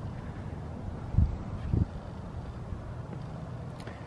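Faint, steady low rumble, with two short, dull low thumps about a second and just under two seconds in.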